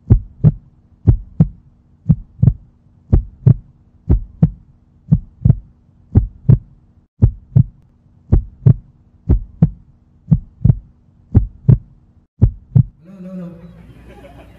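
Heartbeat sound effect: paired low thumps in a lub-dub pattern, about one pair a second, over a faint steady hum. It stops about a second before the end, giving way to crowd noise.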